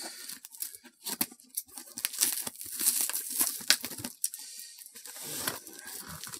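Cardboard shipping box and its packing tape being torn, picked and scraped open without a proper box cutter: irregular ripping, scratching and crinkling with small knocks.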